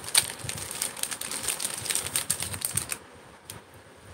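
Clear plastic jewellery pouches rustling and crinkling as they are handled, a dense run of small crackly clicks that stops about three seconds in.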